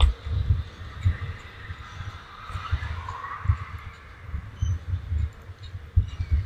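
Skateboard rolling on asphalt: wheel noise with irregular low thuds several times a second.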